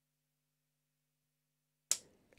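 Near silence: a faint steady low hum on an open microphone, then one short, sharp click near the end.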